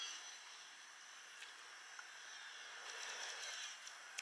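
Near silence: a faint steady hiss with a few soft ticks.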